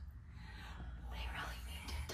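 A person whispering softly, heard as short breathy hisses over a low steady rumble.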